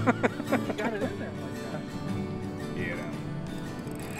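Background music with steady held notes; a man's voice is heard over it in the first second.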